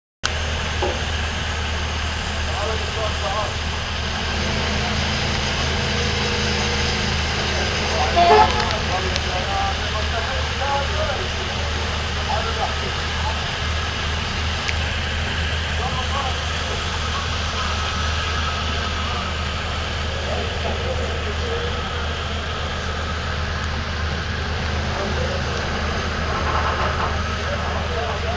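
Cruise ship's diesel engines running with a steady low drone, with scattered crew voices calling between the boats during mooring. A brief louder burst comes about eight seconds in.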